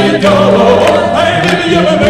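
Choir singing a Cossack song with a backing band, amplified live through stage speakers.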